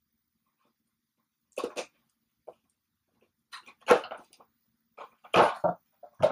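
A dog barking in short, separate barks, starting about one and a half seconds in and recurring several times.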